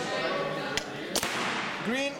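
A sharp crack a little after a second in, followed by a short hiss that fades within about half a second, amid low voices.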